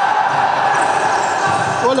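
Futsal game sound in a large indoor sports hall: a steady wash of echoing voices, with the ball and players' shoes on the wooden court.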